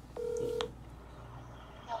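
A mobile phone on speaker gives a short, steady electronic beep of about half a second as the outgoing call connects. Near the end, the person called begins to answer over the phone line.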